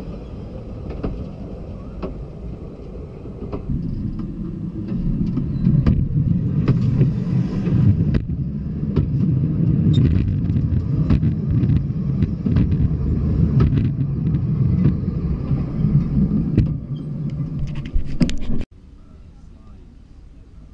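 Small narrow-gauge railway carriages rolling past and over, a low, steady rumble of wheels on rail with many sharp clicks, growing louder a few seconds in and cutting off suddenly near the end.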